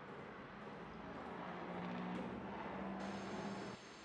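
A low steady hum over background noise, which cuts off abruptly near the end.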